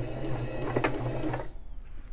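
Electric sewing machine running steadily as it backstitches, stitching in reverse over the end of a seam to lock the stitches. It stops about one and a half seconds in.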